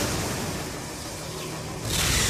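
Animated sound effect of a swirling energy vortex opening in the sky: a wide, noisy rushing sound that eases off through the middle and swells up again near the end.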